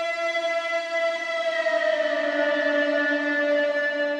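A single long, sustained horn-like tone with many overtones, its pitch sliding slightly lower about two seconds in.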